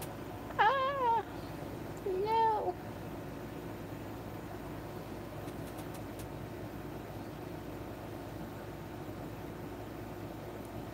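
A cat meowing twice in quick succession, each call about half a second long, the first wavering and the second rising and falling; after that only a steady low room hum.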